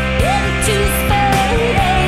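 Rock band music: guitars and bass over drums with regular cymbal hits, a bending lead line on top, in an instrumental stretch of the song with no singing.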